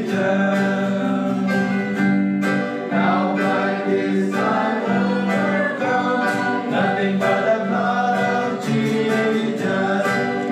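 Voices singing a worship song together, accompanied by a strummed acoustic guitar.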